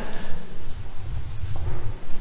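Footsteps on a hard floor, a few irregular steps echoing in a large church.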